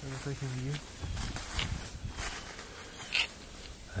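Footsteps crunching through dry leaves and a thin layer of snow on the forest floor at a slow walking pace, one step every half second or so.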